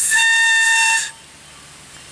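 A whistle cut from a hollow Himalayan balsam stalk, blown once: a loud, steady, breathy whistle tone lasting about a second that stops sharply. It is one blast of the kind used for the Alpine emergency signal.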